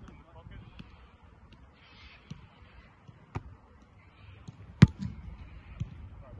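A punter's foot striking an American football in a rollout punt: one sharp, loud thud near the end. A fainter knock comes about a second and a half before it.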